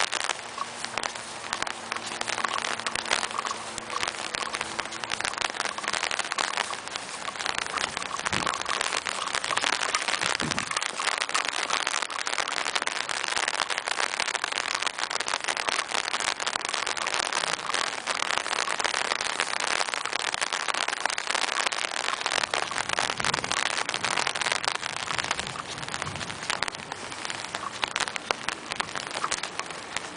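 Light rain, a sprinkle, falling on an umbrella held just over the microphone: a dense, steady spatter of many small drops.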